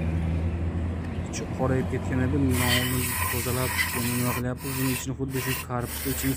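Aerosol carburettor cleaner spraying onto a car's throttle body to clean it, starting about two and a half seconds in as a loud steady hiss, with brief stops as the nozzle is released, over a man talking.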